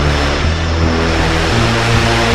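Electronic synthesizer music: a loud rushing noise wash over held low bass synth notes, the bass stepping to a new pitch about three-quarters of the way through.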